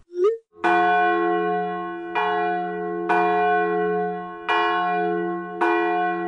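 A church bell sound effect tolling: the same bell struck five times, about one to one and a half seconds apart, each strike ringing on into the next.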